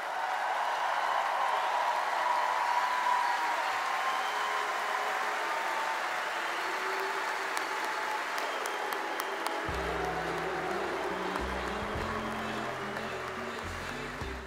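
Large audience applauding. About ten seconds in, music with a deep, stepping bass line comes in under the applause.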